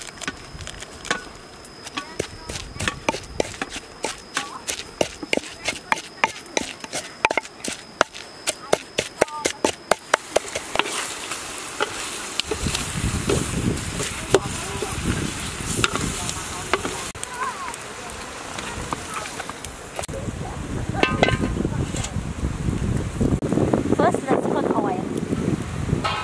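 A wooden pestle pounding garlic and black pepper in a wooden mortar, about two to three sharp knocks a second, over a steady high insect drone. After about ten seconds the pounding stops, and scattered clicks of tongs against a metal wok sit over a low rushing noise.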